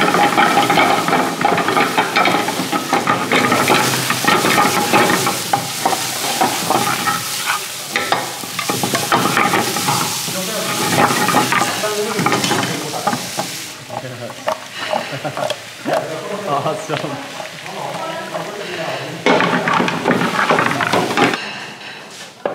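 Monkfish kebabs and vegetables sizzling in hot oil in a large steel pan over a gas flame, with the clatter and scrape of the pan being shaken and tossed. The frying is loudest in the first half and comes in broken spurts after that.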